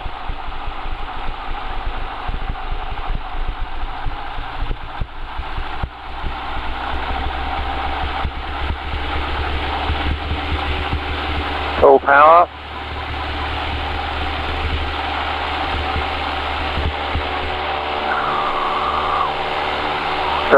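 Van's RV-6A's four-cylinder engine and fixed-pitch propeller running at takeoff power during the takeoff roll, a steady drone heard from inside the cockpit.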